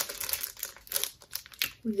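Clear plastic packaging of a lip gloss pack crinkling and crackling in irregular bursts as it is handled.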